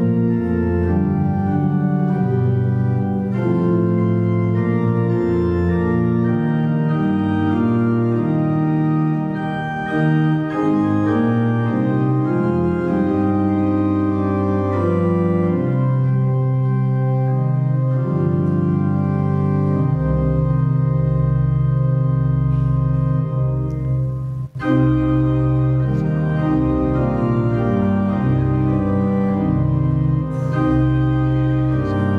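Church organ playing a hymn in slow, held chords. A deep pedal bass comes in about two-thirds of the way through, and the sound drops out for an instant a few seconds later.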